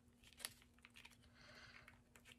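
Faint clicks and light crinkling of a wax melt package being handled and pried at with fingernails while someone tries to get it open, with one sharper click about half a second in.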